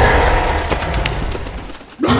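A heavy cinematic boom and rumble dying away, with a few short sharp crackles about halfway, fading out just before the end.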